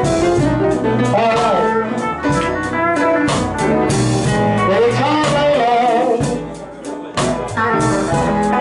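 Live blues band playing: upright piano, drum kit, double bass and guitar, with a bending lead melody over them. Near the end the band drops back briefly, then comes in again with a loud hit.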